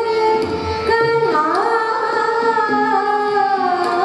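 Indian classical female vocalist singing a raga, holding long notes with a sliding dip in pitch about a second and a half in, accompanied by harmonium, violin and tabla.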